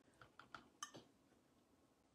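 Near silence: room tone with about five faint small ticks in the first second.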